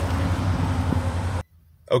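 Wind rumbling and buffeting on the microphone outdoors, cut off abruptly about one and a half seconds in, then near silence.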